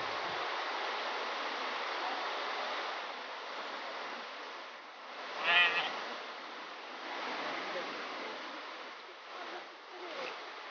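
One short bleat with a wavering, quavering pitch about halfway through, from a small flock of sheep and goats, over a steady background rush.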